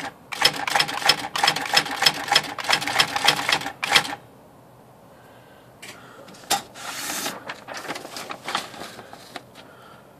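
IBM Wheelwriter electronic typewriter printing a line of letters with its 12-pitch printwheel: a quick run of sharp strikes that stops about four seconds in. Past the middle, a single click and a short rasp as the sheet is handled at the platen.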